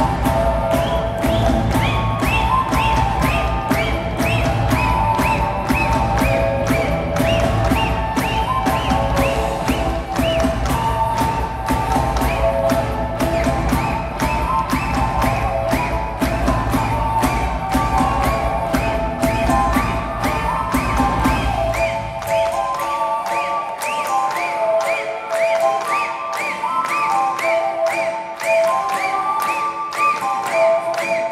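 Folk-rock band playing live: drums, bass, electric guitar and violin together. About 22 seconds in, the drums and bass drop out, leaving the violin and other melody lines playing on their own.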